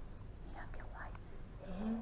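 Hushed, whispered speech, with a voice starting to speak aloud near the end, over a steady low hum.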